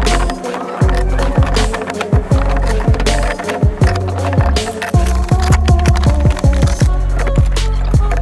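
Background music with a beat of deep bass hits that drop in pitch, over sustained mid-range tones.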